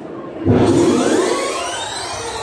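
A loud whooshing sweep that rises in pitch, a sound effect in the dance music mix played over the hall loudspeakers. It starts suddenly about half a second in.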